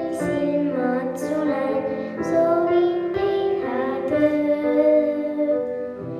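A young girl singing a song into a microphone over steady instrumental accompaniment.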